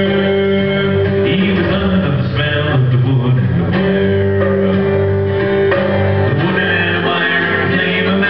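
Live folk-rock band performing a song: a man sings over strummed acoustic guitar, with the rest of the band playing along.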